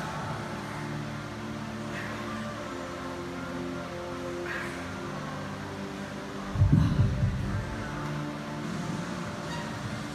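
Background music with sustained notes. A brief low rumble comes about two-thirds of the way in.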